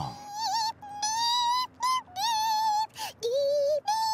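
A cartoon character singing a wordless song in a very high voice: long held notes with a slight wobble, broken by short gaps, dipping to one lower note about three seconds in.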